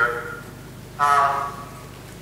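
Only speech: a man lecturing, with one short held vowel sound about a second in between brief pauses.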